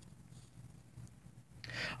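Quiet room tone with a faint low hum. There is a tiny tick about a second in and a soft breath-like rise near the end.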